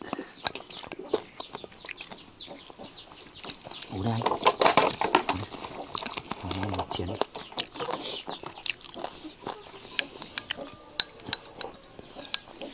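Spoons and utensils clinking and scraping against bowls and a serving pot during a meal: many small sharp clicks scattered throughout, with brief talk about four seconds in.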